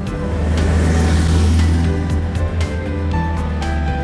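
Background music with held notes over a vintage car driving past; its engine and tyre noise swell in the first two seconds as it nears.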